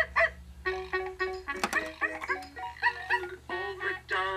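Electronic baby toy sounding a couple of short animal calls at the start, then playing a bright synthesized tune in quick, short notes.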